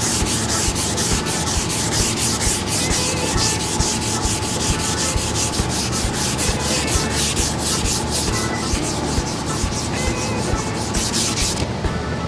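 220-grit sandpaper on a hand sanding block, rubbed back and forth in quick, steady strokes over guide coat and body filler on a plastic car bumper. The dry scratching sound is sanding through the guide coat to find the low spots and the 180-grit scratches.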